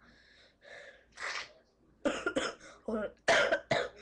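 A boy with a cold coughing. Two soft breaths come first, then a run of short coughs in the second half, the loudest about three seconds in.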